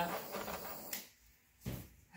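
A handheld torch used to pop air bubbles in poured paint hissing faintly, cut off with a sharp click about a second in, then a single dull knock as it is set down.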